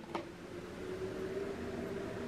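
Quiet room tone with a faint steady hum, and a light click just after the start.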